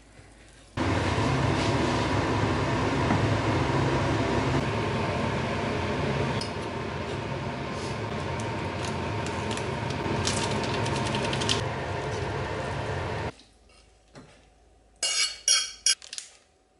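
A pot of instant ramen noodles cooking at a boil on the stove: a steady loud hiss of bubbling water with a hum under it and a few light clinks midway, cut off suddenly near the end. Then a few quick scraping strokes of a metal box grater.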